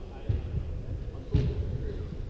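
A soccer ball being kicked twice on artificial turf in a large indoor hall, the second kick louder, with faint shouts from the players ringing in the hall.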